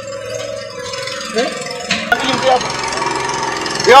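A small engine running steadily, with brief voices over it.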